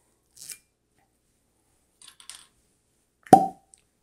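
Cork stopper pulled from a glass whisky bottle: a few faint scrapes as it is worked loose, then a single sharp pop with a brief hollow ring as it comes free, near the end.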